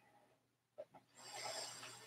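Faint breathing held in downward-facing dog: a short click a little before the middle, then one soft, slow, airy breath through the second half.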